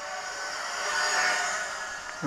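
Four small electric motors and propellers of a model four-engine Lancaster bomber in flight, a buzzing whine of several close tones that grows louder about a second in and fades as the plane passes.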